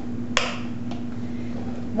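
Plastic clip of a Potty Scotty WeeMan urinal snapping into its grooves: one sharp click about a third of a second in, then a fainter click near the middle.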